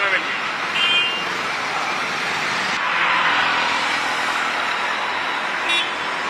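Road traffic in a congested jam: a steady noise of idling and crawling cars, auto-rickshaws and motorcycles, with a short horn toot about a second in and another near the end.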